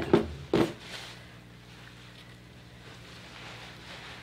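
Quiet room tone with a steady low hum, broken by one short noise about half a second in; any scissor snips in the hair are faint at most.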